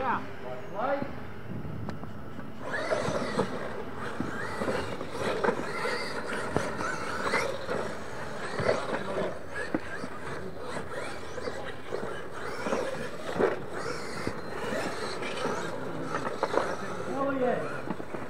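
Radio-controlled monster trucks running over a dirt track, with short squeals and knocks, mixed with the indistinct talk of people close by.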